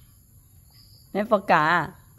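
A steady high-pitched insect chorus, like crickets, runs under a short spoken phrase about a second in.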